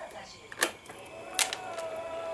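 Two sharp clicks, under a second apart, as the ignition key switch of a Honda Beat FI scooter is turned on, followed by a faint steady hum as the freshly rewired electrics come alive, typical of the fuel-injection pump priming.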